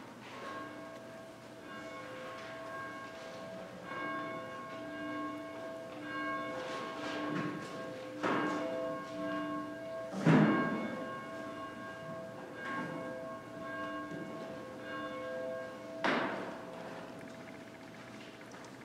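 A church bell ringing repeatedly at a moderate level. Each strike sets off steady ringing tones that hang on until the next, and the strongest strikes come about ten seconds in and again near the end.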